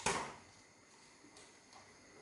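A short clatter of cookware on the stove that dies away within half a second, then near silence.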